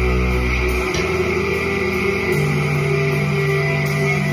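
Heavy nu-metal rock track with an electric bass playing along. A sustained low bass note changes to a new pattern about a second in.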